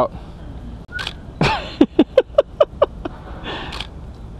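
A person laughing: a quick run of about seven short 'ha' bursts, about five a second, starting about a second and a half in, over a steady low background rumble.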